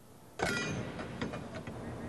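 Workshop noise: a steady mechanical hum with a few light clicks, starting suddenly about half a second in.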